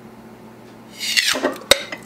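A vacuum-sealed mason jar lid being pried up with a lid opener: about a second in, a short hiss of air rushing into the jar, then one sharp metallic click as the seal lets go. The hiss is the sign that the jar was holding a vacuum.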